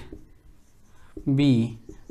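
Marker pen writing on a whiteboard, a faint scratching under the speech.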